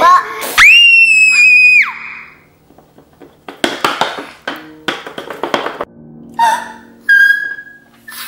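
A child's high-pitched scream, held for about a second, near the start. Then come short scattered vocal sounds, and a second, shorter high squeal near the end, over a faint low steady background drone.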